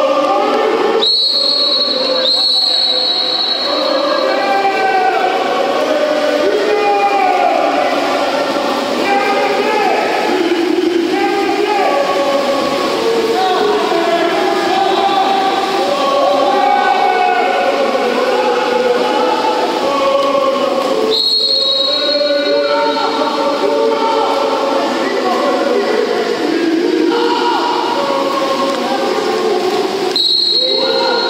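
A referee's whistle blowing shrill blasts, two in quick succession about a second in and another about 21 seconds in, over continuous shouting from players and coaches around a water polo pool.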